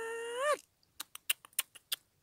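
A woman's long, drawn-out "oi" exclamation of delight, held on one high pitch and ending with a rising swoop about half a second in. It is followed by a quick run of about eight sharp clicks.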